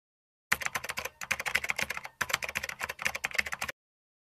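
Typing sound effect: rapid keystroke clicks in two runs, with brief pauses about a second in and just past two seconds. It starts sharply about half a second in and cuts off sharply shortly before the end.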